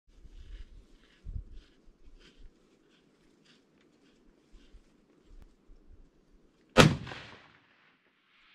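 A single rifle shot from a scoped rifle, sharp and loud about seven seconds in, with an echo trailing off. Before it there is only faint low rumbling.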